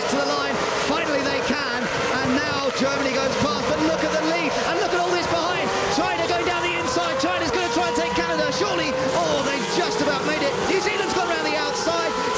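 A pack of A1GP single-seater race cars accelerating hard at a restart. Their Zytek V8 engines overlap, and several rise slowly in pitch as the cars gather speed through the gears.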